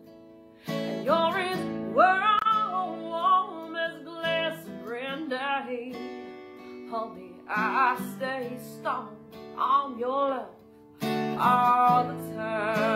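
A woman singing to her own strummed acoustic guitar, phrase after phrase, with two short breaks between lines: one at the start and one about eleven seconds in.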